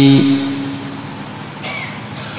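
A monk's voice intoning a long chanted syllable on one steady pitch, which ends just after the start and fades into a pause with a faint brief hiss near the end.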